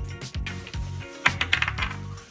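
Small hard game pieces clattering on a wooden tabletop, a quick run of clicks about midway, over background music with a steady low bass.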